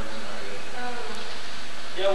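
A steady buzzing hum with hiss, with faint voices underneath.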